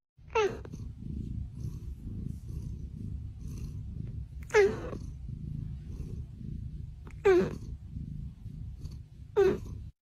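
A cat purring steadily and loudly, broken four times by short high cries that slide down in pitch.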